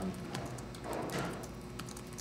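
Laptop keyboard typing: scattered light key clicks over a steady low room hum.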